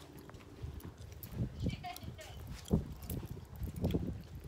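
Footsteps on a gazebo's wooden plank floor: a few irregular hollow knocks, the loudest a little under three seconds in, with faint voices in between.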